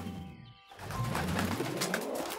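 Cartoon swoosh transition effect: a sweeping glide falls away to a brief dip about half a second in, then sweeps back up, over soft background music.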